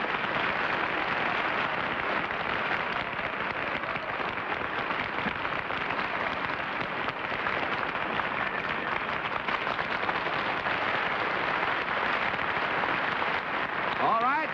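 Studio audience applauding steadily: dense, even clapping for the arriving mystery guests.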